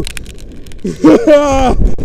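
A man's excited yell from a rope jumper in free fall, starting about a second in and lasting about a second, after a few faint clicks.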